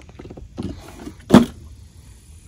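Cloth helmet bag being handled: its drawstring cord pulled open and the fabric rustling, with small clicks and one sharp, loud thump about a second and a half in.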